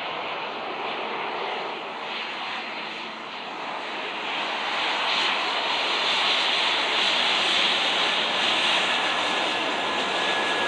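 Embraer E190's twin turbofan jet engines running as the airliner rolls along the runway after landing, a steady jet rush that grows louder from about four seconds in as the aircraft draws near, with a faint steady whine near the end.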